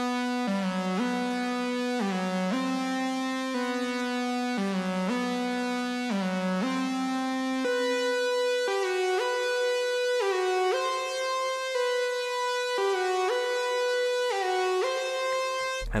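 Serum software synth lead ('Lead - Future' preset) playing a solo melody of held B and C notes with short half-step notes below them. The same figure repeats an octave higher from about halfway through.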